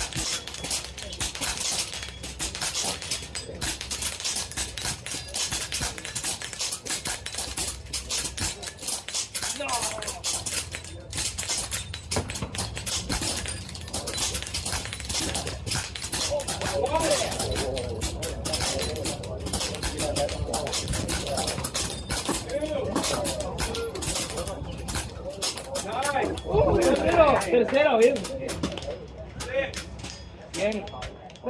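Airguns firing rapidly from a line of shooters in a timed speed-silhouette heat: sharp, overlapping shots several a second that thin out near the end. Indistinct voices chatter in the second half.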